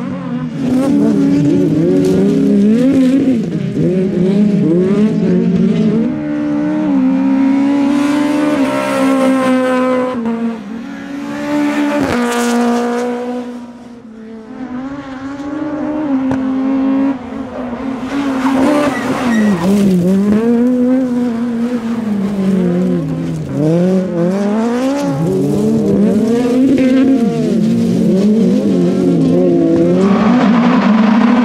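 Škoda Fabia MK1 STC-1600 rallycross car racing hard, its 1.6-litre engine revving up and falling back again and again through gear changes and corners. About twelve seconds in it passes close by, then fades briefly before coming back.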